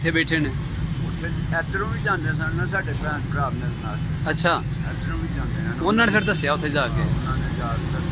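Steady low rumble of road traffic under an elderly man's Punjabi speech; his voice grows louder about six seconds in.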